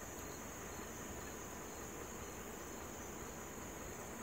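Faint, steady, high-pitched insect chorus, an unbroken shrill drone typical of crickets in late summer.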